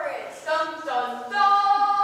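Unaccompanied singing: a few short sung notes, then one long held note near the end.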